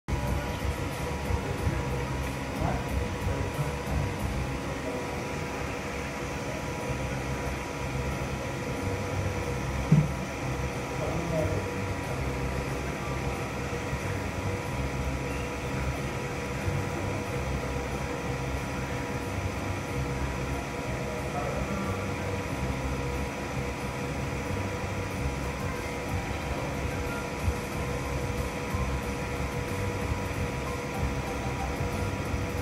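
Steady mechanical hum with faint, indistinct voices in the background, and a single sharp click about ten seconds in.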